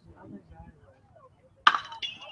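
A metal baseball bat hits a pitched ball about one and a half seconds in: one sharp ping with a short ring after it, from a hard-hit line drive.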